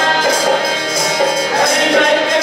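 Bhojpuri folk song from a bidesia musical play: a lead singer with a dholak barrel drum and jingling percussion keeping a steady beat.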